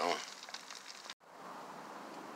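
Food sizzling in a foil-lined pan over a campfire, a soft hiss with faint crackle. It is cut off abruptly a little over a second in, and a fainter steady hiss follows.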